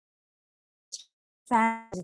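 Near silence for about a second and a half, broken by a short faint hiss, then a woman's voice resuming speech on a long held vowel.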